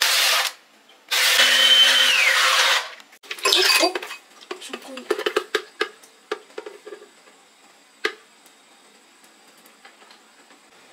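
Countertop blender running in three bursts, a brief pulse, a longer run of under two seconds and a short one, blending mango with ice. Then a string of small knocks and taps as the thick shake is tipped from the plastic jar into a glass, with one sharper knock about eight seconds in.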